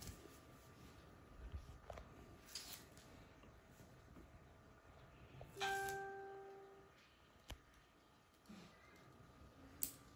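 A quiet room with a few faint taps and clicks; about halfway through, a single clear chime-like ding rings out and fades away over about a second.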